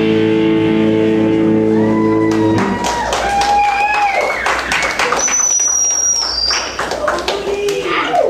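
A live punk rock band holds a distorted electric-guitar chord that cuts off about two and a half seconds in. Shouts and whoops from the audience follow, along with a high whistle that slides down and scattered claps.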